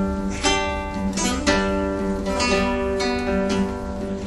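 Nylon-string classical guitar playing an instrumental passage of a nueva trova song: chords struck about every half second, their notes ringing on between strokes.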